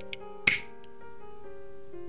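Soft background piano music with a lighter struck once about half a second in, a short sharp scratch and hiss as the flame is lit to shrink heat-shrink tubing.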